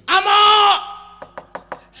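A high-pitched voice calls out one drawn-out note for under a second, dropping in pitch as it ends, followed by a few quick wooden knocks from the dalang's cempala striking the puppet chest.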